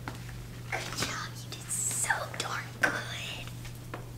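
Quiet whispering and soft talking in short snatches, over a steady low electrical hum.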